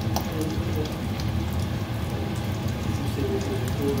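Hot oil sizzling and crackling steadily around two slices of bread shallow-frying in a pan.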